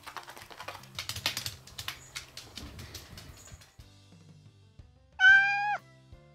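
A cat meows once, a short, high call about five seconds in that is the loudest sound here. Before it come light, quick clicks and rustling over quiet background music.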